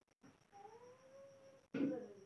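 A cat meowing faintly: one long drawn-out call that rises slightly in pitch.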